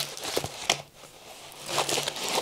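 Rustling and crinkling of a rolled diamond painting canvas and its paper sheet being handled, with a few short crackles in the first second and a quieter stretch near the middle.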